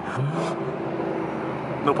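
BMW 340i's turbocharged inline-six and road noise heard from inside the cabin while driving. The engine note rises in pitch for a moment, then holds a steady drone.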